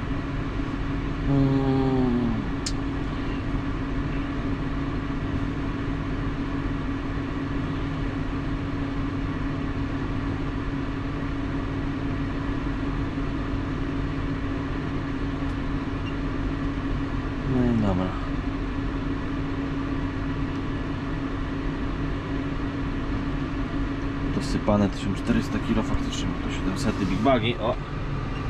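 John Deere 6155M tractor's six-cylinder diesel idling steadily, heard from inside the cab.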